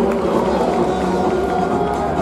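Stadium public-address sound echoing through a domed ballpark: background music and the drawn-out, reverberant voice of the announcer reading the starting lineup.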